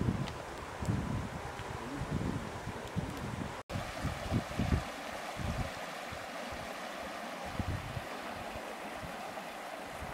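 Flowing stream water rushing steadily, with wind buffeting the microphone. The gusts are strongest before a brief cut about a third of the way in; after it the water's rush is steadier and the wind lighter.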